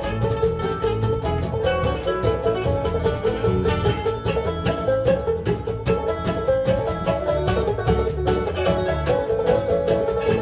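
Live bluegrass band playing an instrumental passage on banjo, mandolin, acoustic guitar and upright bass, fast picked notes over a steady bass.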